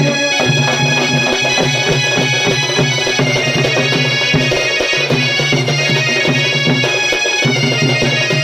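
Odia folk dance music: a barrel drum (dhol) beaten in a quick rhythm under a steady, reedy wind-instrument melody over a held drone.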